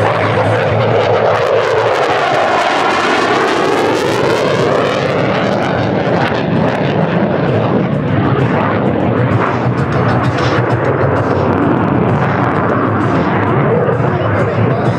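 Saab JAS 39C Gripen's single Volvo RM12 turbofan at high power in a display, a loud, steady jet noise. A swirling, phasing sweep comes about two to five seconds in as the fighter passes.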